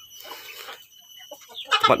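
Faint, soft clucking from a Pelung hen settled in a wooden nest box, on the point of laying, mostly in the first second.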